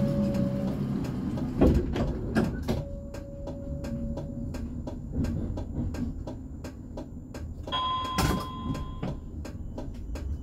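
Stationary tram with a steady low hum, broken by held electronic beep tones: a lower one twice, then a higher one near the end. There are two sharp knocks, about 1.7 s and 8.3 s in.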